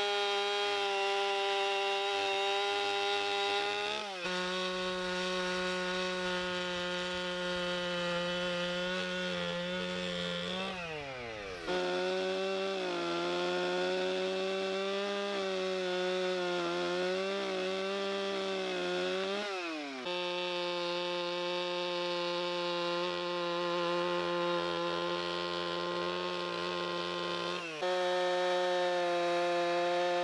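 Two-stroke gas chainsaw under load, ripping a log lengthwise along the grain. The engine note holds mostly steady and dips briefly a few times. About a third of the way in, the pitch falls away and then climbs back up, and for a few seconds after that it wavers as the load changes.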